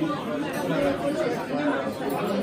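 Steady hubbub of many diners' overlapping voices chattering in a crowded restaurant dining room.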